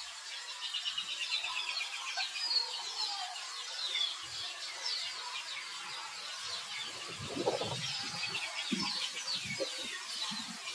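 Baby macaque crying in repeated short, high-pitched squeals, angry at being refused the breast by its mother. Soft rustling and thumps join in during the second half.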